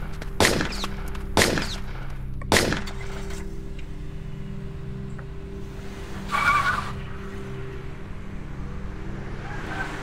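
Three gunshots, about a second apart, in the first three seconds, followed by a car engine running steadily with a short tire squeal about six and a half seconds in.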